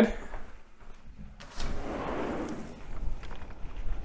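Wind rushing and buffeting the microphone outdoors, starting about a second and a half in, with a low rumble underneath.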